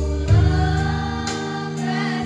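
A group of girls singing a slow song together over instrumental backing with sustained chords and deep bass notes; a new bass note and sung phrase come in shortly after the start.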